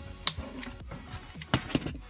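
A few sharp clicks and taps of a hobby knife and a straight edge against a piece of rubber and the work surface as a straight cut is made, one about a quarter second in and a quick cluster around a second and a half in. Faint background music runs underneath.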